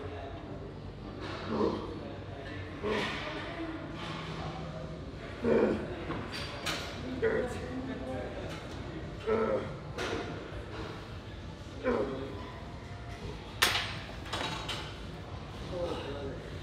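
A man grunting and breathing hard with effort, a short burst every second or two, as he pushes one-arm tricep extensions toward failure. A few sharp clicks or knocks come in between.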